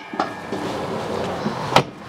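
Exterior propane compartment door on a fifth-wheel basement being swung shut, ending in one sharp latch click near the end.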